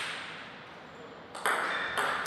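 Table tennis ball bouncing: a sharp click with a short ringing tail at the start, then a few more quick bounces about a second and a half in.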